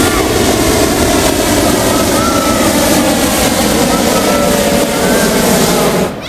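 Hot-air balloon's propane burner firing in one long blast, a loud steady roar that cuts off abruptly at the end.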